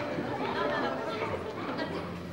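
Indistinct chatter of several people's voices, with no single clear speaker.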